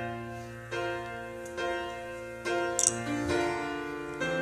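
Piano playing the introduction to a sung solo: chords struck a little under once a second, each left to ring and fade. A brief sharp click sounds near three seconds in.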